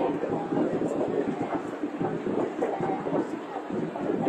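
Large crowd leaving a stadium, a steady dense babble of many voices with no single voice standing out.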